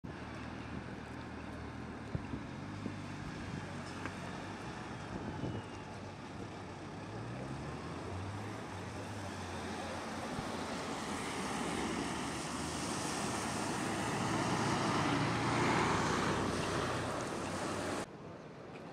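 City street traffic: engines running low and vehicles driving past, with a few sharp clicks early on. The traffic noise grows louder through the second half as vehicles pass close, then drops suddenly at the end.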